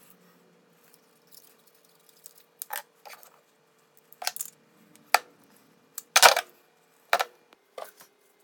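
Handling noise from fitting an air fitting into a pneumatic air nibbler: a string of separate clicks and knocks of metal parts and tools against a wooden desk, the loudest about six seconds in, over a faint steady hum.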